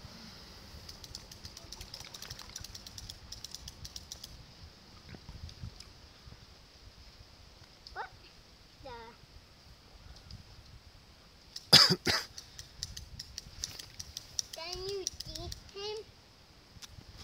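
Fly reel clicking in quick, uneven runs during the first few seconds as the boy fights a strong salmon. About twelve seconds in, someone coughs twice, the loudest sound. A small child's voice rises and falls in short sounds midway and again near the end.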